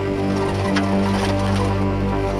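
Background music with sustained held notes and a few light percussive hits.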